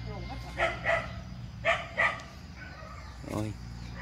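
Dog barking: two quick pairs of short, sharp barks about a second apart, then a weaker bark near the end, over a steady low hum.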